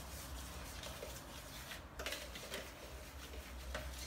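Spoon stirring a stiff mix of flour, salt, water and oil in a plastic bowl: faint scraping with a few light knocks, the clearest about two seconds in.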